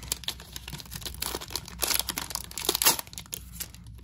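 Plastic wrapper of a basketball trading-card value pack crinkling and tearing as it is opened by hand, a run of sharp crackles that is loudest a couple of seconds in and eases off near the end.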